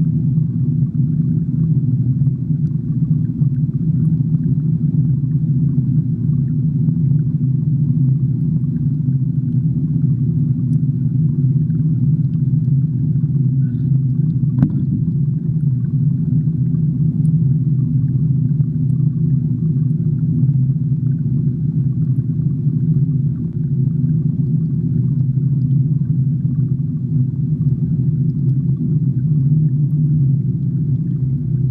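Steady low hum of running aquarium equipment (pump and plumbing), with a single sharp click about halfway through.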